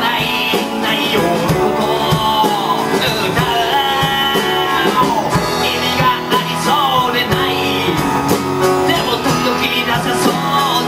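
Live folk-rock band playing: a man sings into a microphone over his strummed acoustic guitar, with a backing band and a steady beat.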